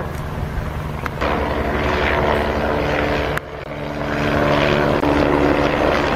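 Helicopter flying overhead: a steady engine and rotor drone with a low hum, which dips briefly about three and a half seconds in.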